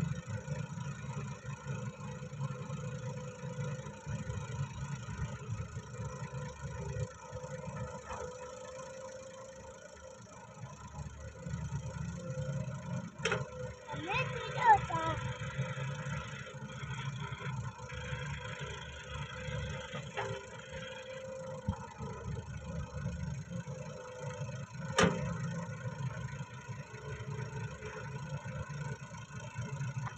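Diesel engines of a Massey Ferguson 385 tractor and a Doosan wheeled excavator running steadily while the excavator digs and loads sand. Two sharp knocks stand out, one about thirteen seconds in and another near twenty-five seconds.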